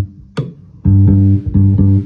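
Vintage Silvertone 1442L electric bass, built by Danelectro, with flatwound strings and a single lipstick pickup, played through an amplifier. A sharp click comes about half a second in, then the same low note is plucked twice, each ringing briefly before being cut off.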